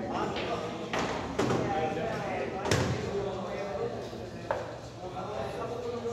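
Billiard balls knocking on a pool table: four sharp clicks, about one, one and a half, nearly three and four and a half seconds in, the third the loudest with a dull thud beneath it, over low chatter of men talking.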